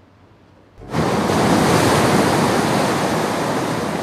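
Heavy sea surf crashing against rocks: a loud, continuous rush of breaking water that starts suddenly about a second in, after faint hiss.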